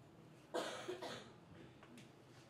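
A person coughing: a quick run of two or three coughs about half a second in.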